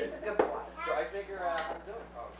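Indistinct conversation of several people around a dinner table, with one sharp knock, like tableware set down, less than half a second in.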